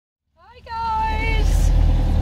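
Steady low engine rumble inside a camper van's cab, starting just after the opening. Over it a high voice holds a drawn-out call for about a second.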